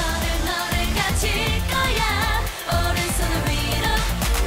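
K-pop dance-pop song: a woman's lead vocal over a backing track with a steady, heavy beat.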